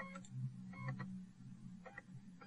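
Faint computer mouse clicks, a few scattered over two seconds, over a low steady hum.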